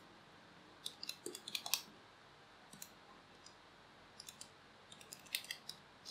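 Faint clicks of handheld calculator keys being pressed in short, irregular runs, with the busiest run about a second in and another near the end, as a multiplication is keyed in.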